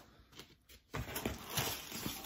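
Record sleeves being handled: a few soft ticks, then from about a second in, a run of paper and cardboard rustling with light knocks as one LP is put aside and the next is pulled out.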